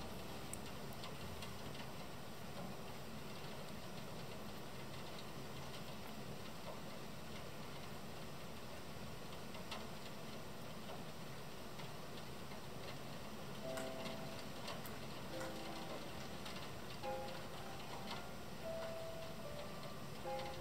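Steady hiss of rain with scattered, irregular ticks of drops. A few soft music notes come in over it in the last several seconds.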